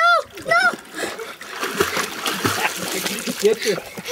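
A swimmer splashing in lake water, arms paddling at the surface as he swims up to a rocky edge. A child's high shout opens it.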